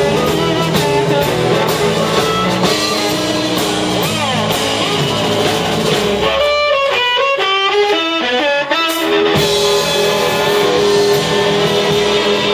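Live blues-rock band playing: electric guitar, drum kit and amplified harmonica cupped to a microphone. About six and a half seconds in, the drums and low end drop out and a lone run of quick stepped notes plays for about three seconds. Then the full band comes back in.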